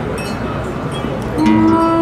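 Live experimental acoustic music from a classical guitar, a bowed cello and a vocalist on a microphone. A rough, noisy texture comes first, then long held notes come in about a second and a half in.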